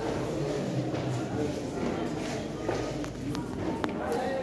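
Men's choir singing a cappella in isicathamiya style, with voices held together in harmony in a large, echoing hall. A few sharp taps come near the end.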